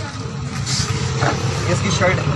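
Indistinct voices over a steady low background rumble, with a brief hiss about two-thirds of a second in.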